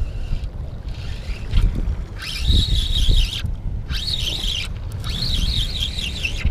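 Wind rumbling on the microphone and a sleeve rubbing over it. From about two seconds in comes a high, wavering whirr with a couple of short breaks: a spinning reel being cranked to bring in a small fish.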